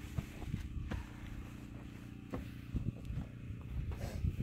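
A few faint, sharp knocks of footsteps on newly built wooden step boards as someone steps onto them to test that they hold.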